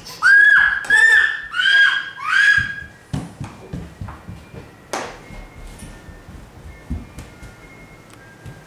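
A young child squeals four times in quick succession, high-pitched, in the first two and a half seconds. Light clicks and taps of a spoon against a bowl and tray follow, with one sharper click about five seconds in.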